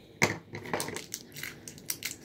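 A foil toy wrapper being handled and crumpled, giving a series of short, irregular crackles.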